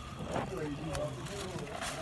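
Quiet, indistinct talking, fainter than close speech, over a steady low room hum.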